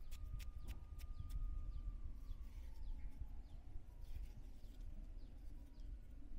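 Kitchen knife cutting chunks of soft red dragon fruit held over a bowl: a few faint clicks of the blade in the first second, then soft cutting. Under it runs a low rumble, with faint bird chirps.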